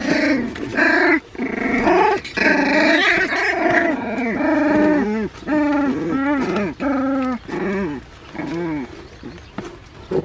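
San'in Shiba puppies, about 25 days old, crying out while play-fighting: a dense run of high, bending puppy cries for the first few seconds, then a string of separate short cries about two a second that stop near the end.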